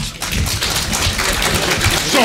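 Audience applauding: dense, many-handed clapping that starts suddenly and stays loud.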